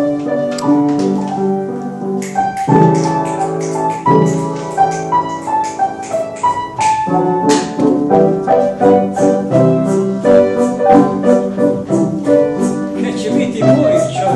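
Piano music, chords and a melody played throughout.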